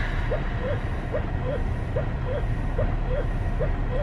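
Double electric breast pump running, its motor cycling in a quick even rhythm of about two and a half strokes a second, alternating two slightly different sounds, over a steady low rumble.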